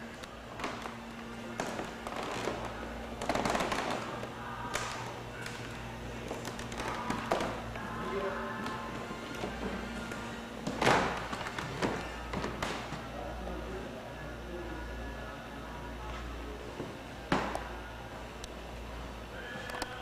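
Hall ambience: faint background music and distant voices over a steady low hum, with a few sharp knocks, the loudest about halfway through and another near the end.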